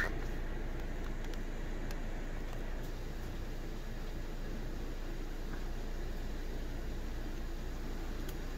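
Steady background hiss with a low hum, like a room fan or air conditioner, with no distinct events.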